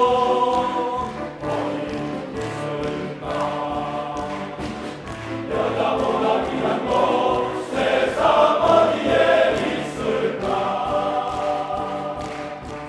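Men's choir singing in Korean.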